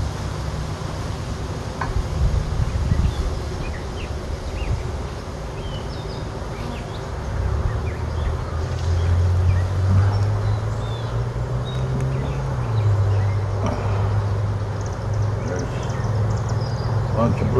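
Honeybees buzzing around an open hive as a frame of comb is lifted out: a steady low hum that grows louder about halfway through and shifts in pitch as bees fly close.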